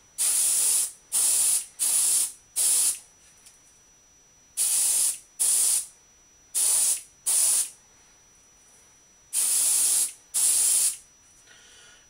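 Airbrush spraying paint in short hissing bursts of about half a second each, ten in all in three groups of four, four and two: light dusting passes of translucent purple over a crankbait.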